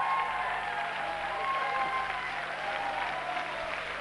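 Studio audience applauding, a steady spread of handclaps that eases off slightly toward the end.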